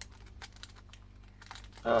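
Light, faint clicks and crinkles of a shrink-wrapped plastic CD jewel case being turned over in the hands.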